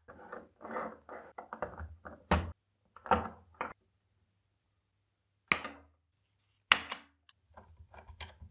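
Hands bending and fitting a stiff blue neutral wire inside a plastic distribution board: handling rustle and scattered clicks and knocks of wire against plastic, with a few sharper knocks spread through.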